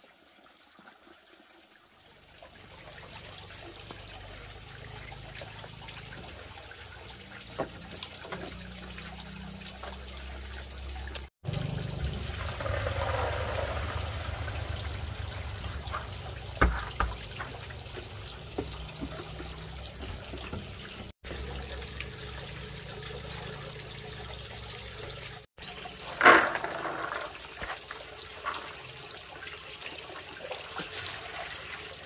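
Water running steadily from a pipe into a plastic basin, starting about two seconds in, with scattered knocks and splashes as plastic bowls of soaked soybeans are handled. One sharp knock or splash, the loudest sound, comes near the end.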